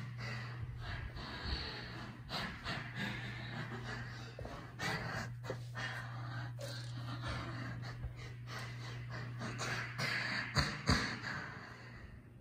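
A person breathing close to the microphone, mixed with phone-handling rustle and short clicks, over a steady low hum that stops near the end.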